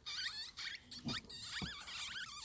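Newborn ferret kits squeaking: many short, thin, wavering high squeaks overlapping one another.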